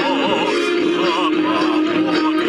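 A Chinese grassland-style ballad: a singer holds notes with wide vibrato over a steady accompaniment of sustained chords.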